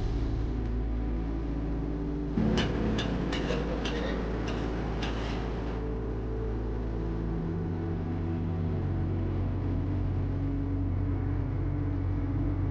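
Suspenseful horror-style background music: a low sustained drone, with a thump followed by a run of about eight short sharp ticks a few seconds in.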